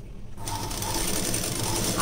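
A black straight-stitch sewing machine starts up about half a second in and runs steadily, stitching a seam through blouse fabric and its lining with a fast, even clatter of needle and feed.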